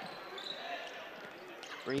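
Basketball arena sound during live play: a steady crowd murmur with a basketball being dribbled and passed on the hardwood court.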